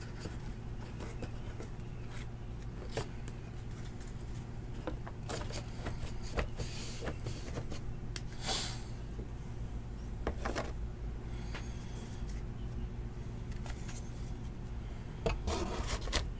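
Trading cards being handled and put away: scattered light clicks and rustles of card stock sliding and tapping together, with a longer scrape about eight and a half seconds in, over a steady low electrical hum.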